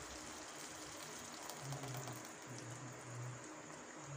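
Faint, soft bubbling of curry gravy simmering in a stainless steel kadai.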